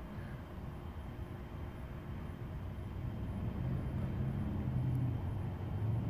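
Low hum of a motor vehicle engine, growing louder in the second half.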